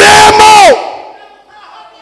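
A man's loud, drawn-out shout into a microphone, held at one pitch for under a second and dropping as it breaks off, loud enough to overload the microphone. It trails into a faint hall echo with soft, steady background tones.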